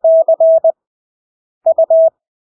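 Morse code (CW) practice tone at 20 words per minute with wide Farnsworth spacing between characters: one steady beep keyed into dah-dit-dah-dit (C), then after a long gap, about a second and a half in, dit-dit-dah (U).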